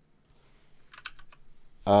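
Computer keyboard keys being pressed: a quick run of four or five clicks about a second in.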